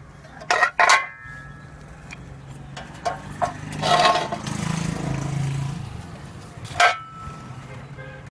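Bent steel plate knocking and clanking against concrete and metal parts as it is handled and set down, with a short metallic ring after the loudest knock about a second in. A low steady hum runs underneath.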